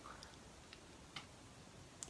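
Near silence: room tone, with three faint short clicks.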